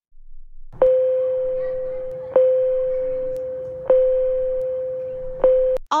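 School bell chime signalling recess: one tone at a single pitch struck four times, about a second and a half apart, each strike fading slowly before the next.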